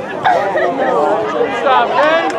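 Several nearby spectators talking over one another, with background crowd noise.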